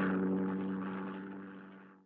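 Cartoon engine sound effect of a small flying toy car turned aeroplane: a steady low hum that fades away as it flies off and stops just before the end.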